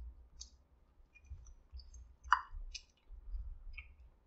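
Quiet mouth clicks and chewing of people eating a chocolate peanut butter cup, scattered short clicks with one slightly louder one a little past two seconds in, over a few soft low bumps.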